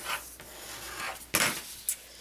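Bone folder rubbing along the fold of a folded cardstock card to press the crease flat: a dry paper scraping, with one stronger stroke a little past halfway.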